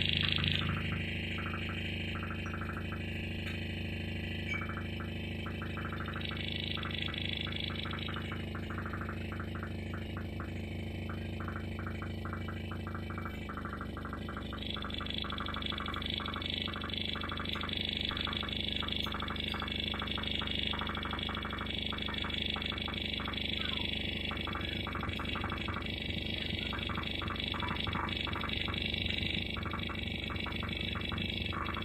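Live experimental electronic music from a rig of patched electronics: layered steady drones and hum under a fast flickering, crackling texture. A higher, brighter layer drops out about a second in and comes back about halfway through, and the low drone shifts at about the same point.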